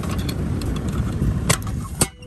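Condenser fan motor running on its own with the compressor unplugged, giving a steady low rush of air. There is a sharp knock about one and a half seconds in.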